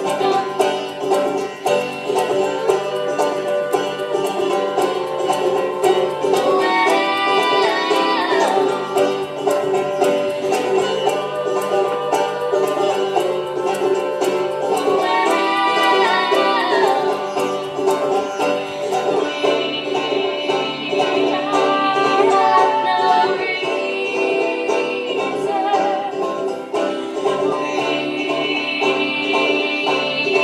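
Live music: a banjo picking steadily, with a woman singing in phrases over it.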